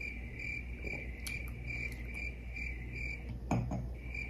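Cricket chirping: a steady high chirp pulsing about four times a second, breaking off briefly near the end. It is the stock cricket sound effect for an awkward silence. A short sharp sound comes in the gap.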